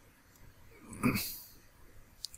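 A man's single short cough about a second in.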